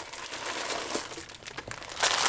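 Small zip-lock plastic bags of beads crinkling steadily as they are picked up and handled.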